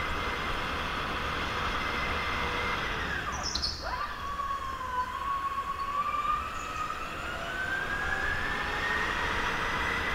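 Onboard sound of a go-kart at speed: a high whine that drops sharply as the kart slows for a corner about three seconds in, then climbs steadily as it accelerates again. A brief high squeal comes in the corner.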